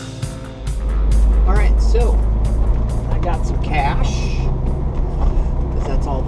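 Steady low rumble inside a moving car's cabin, with a man's voice over it and a few short clicks. A music track stops just as the rumble begins.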